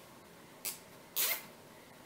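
Heavy-duty nylon zip tie pulled tight through its locking head: two short zipping rasps, the second louder and longer.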